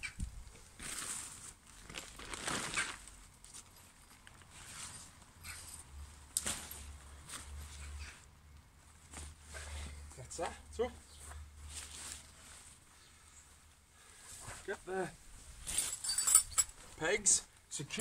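Tent fabric and mesh rustling as a one-man tent and its pole are handled during pitching, with a few short mumbled words about ten seconds in and again near the end.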